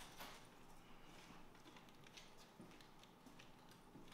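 Faint footsteps of two people walking across a hard floor: a loose, irregular patter of shoe steps.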